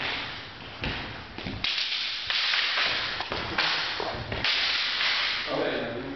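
Sparring with wooden practice swords: a quick series of swishing, scuffing noises, each one starting suddenly, about half a dozen in a few seconds.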